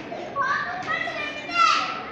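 A child's high voice calling out twice, the second call the loudest and dropping in pitch at its end, over a murmur of people in a stone hall.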